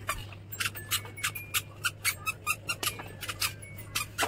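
A toddler's squeaky sandals squeaking in quick succession as he walks, about three to four short squeaks a second, over a low steady hum.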